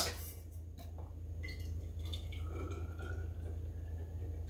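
Hot custard poured from a jug into a stainless-steel vacuum flask: a faint pour, with a faint tone rising slightly in pitch in the second half as the flask fills. A low steady hum lies underneath.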